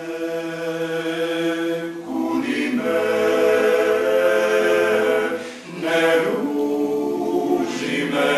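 Male klapa ensemble singing a cappella in close harmony, opening on held chords. The lower voices join about two seconds in for a fuller chord, and there is a brief break for breath just before the six-second mark.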